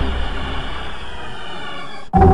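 A Windows startup chime layered with several pitch-shifted copies of itself, from very deep to slightly sharp, its chord dying away. A deep low drone fades out in the second half, while a few high tones slide slightly downward.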